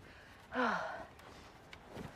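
A woman's single breathy sigh about half a second in, falling in pitch.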